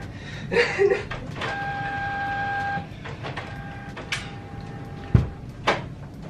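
A printer running with a steady mechanical whine, louder for a little over a second partway through. A few light clicks and one low thump sound about five seconds in.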